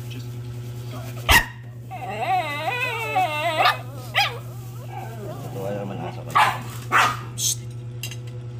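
A dog's long, wavering whine, then two short barks near the end, with a sharp knock about a second in.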